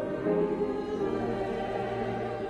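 A choir singing with sustained held notes.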